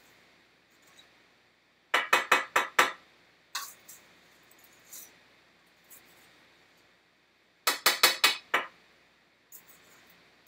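A stainless steel mixing bowl being rapped in two quick runs of five or six sharp metallic taps, each run about a second long, with a single tap between them: batter being knocked out of the bowl.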